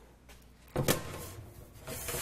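A meal tray knocking against the rack of a food-service trolley and sliding into its rails, with one sharp knock a little under a second in, then a short scrape.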